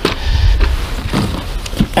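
Low rumble and rustling handling noise as a cardboard box is picked up off a car's hood, with a few faint knocks.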